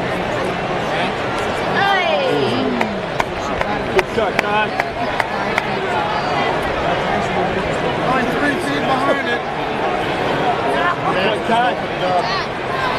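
Baseball stadium crowd: many voices talking at once in the stands, with a falling shout about two seconds in and a few sharp clicks around four seconds.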